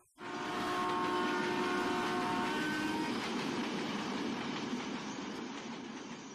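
A train passing at speed, its horn sounding steadily for about the first three seconds over the rumble of the wheels, with the rumble starting to fade near the end.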